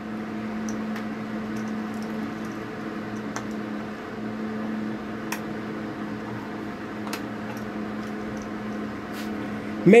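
A steady low machine hum with a single droning pitch, with a few faint clicks of wire terminals being handled.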